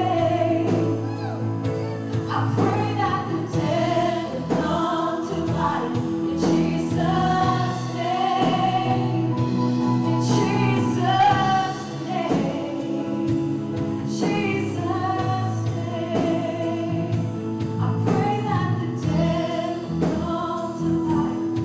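Live worship band playing a gospel song: several singers singing together over acoustic guitar and keyboard, with a steady beat.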